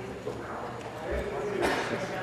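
Many legislators' voices talking and heckling over one another in the chamber after calls to order, with scattered knocks; the loudest knock comes near the end.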